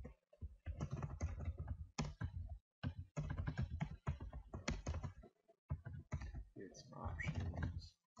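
Computer keyboard being typed on in quick runs of keystrokes, with short pauses between the runs.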